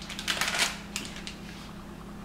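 Plastic cheese-slice packaging crinkling and crackling as slices are peeled out of it by hand, in a quick run of sharp clicks during the first second that then dies down.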